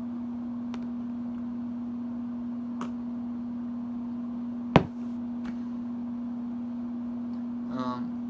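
A steady hum with a few faint clicks, and one sharp knock a little past halfway, the loudest sound here: handling noise from an object held and moved right up against the microphone.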